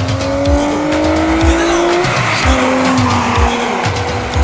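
2007 Nissan Altima 3.5SE's V6 with an aftermarket intake accelerating hard. Its note climbs for about two seconds, then drops sharply and carries on lower. Background music with a steady beat plays over it.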